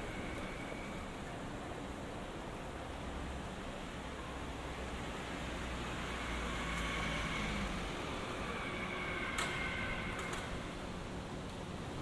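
Steady city-street background noise with a small van driving past close by. Its engine and tyres grow louder around six to eight seconds in, and a short sharp click follows soon after.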